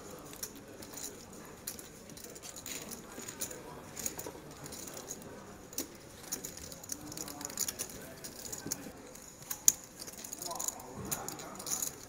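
Clay poker chips clicking and clacking as a player rakes in a pot and stacks the chips, with faint table murmur; one sharper clack comes late.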